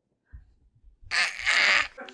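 A baby breathing out noisily right at the microphone, twice in quick succession in the second half, after a soft low bump.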